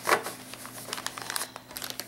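Paper envelopes and a plastic bag being handled, rustling and crinkling in short irregular bursts. There is a sharp rustle just after the start and a few more near the end.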